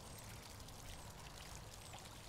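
Faint, steady splashing of water spilling from a pool's rock waterfall.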